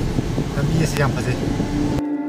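Road and engine noise inside the cabin of a moving car, a steady low rumble, with people talking over it.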